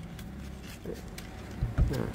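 Faint handling noise, with a few short low thumps near the end.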